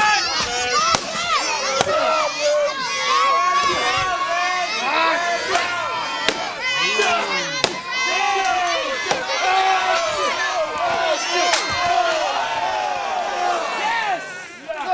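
Crowd of spectators, many of them high-pitched voices, shouting and cheering at once throughout. A few sharp knocks of weapons striking come through the shouting, the clearest about six and seven and a half seconds in.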